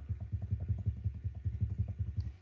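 A rapid, even run of soft, low taps from a computer as slides are paged quickly backwards.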